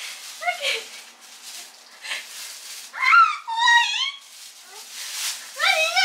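A toddler's high-pitched wordless squeals, one a little before the middle and another near the end, with soft rustling of cloth.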